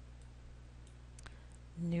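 A few faint computer mouse clicks over a low steady hum, followed near the end by a woman starting to speak.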